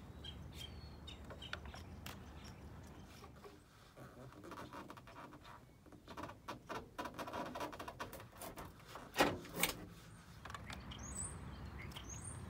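Faint scraping and clicking of a wire fishhook lockout tool being worked through the gap at the top of a van's rear door toward the manual lock button, with a louder clatter about nine seconds in. Birds chirp faintly.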